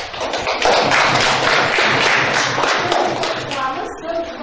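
A classroom of students clapping: a short round of applause that swells in just after the start and dies away near the end.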